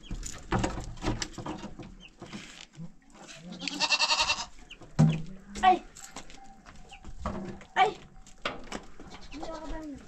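Goats bleating: one long, wavering bleat about four seconds in, then shorter calls. Two sharp knocks come a little after the long bleat.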